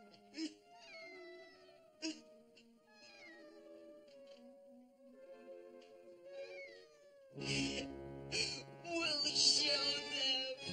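Soft music with steady held notes, over short falling whimpering cries of a boy sobbing. About seven seconds in, the music swells much louder.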